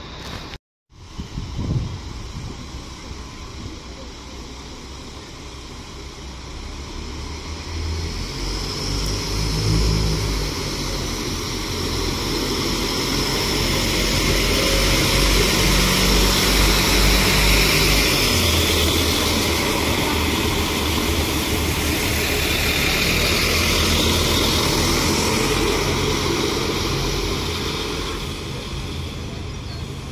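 Alstom Coradia LINT 54 diesel multiple unit running past close by, its diesel engines growling low under the hiss of wheels on rails. It grows louder to a peak in the middle and fades away near the end, after a brief cut-out in the sound just after the start.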